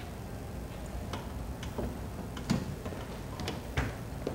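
Quiet room with a low steady hum and a handful of small, irregular clicks and knocks, the sharpest about two and a half seconds in and again just before the end.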